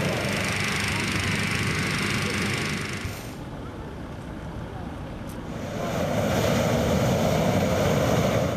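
Hot-air balloon propane burners firing with a steady roar: one blast lasting about three seconds, then a quieter gap, then a second, deeper blast starting about six seconds in.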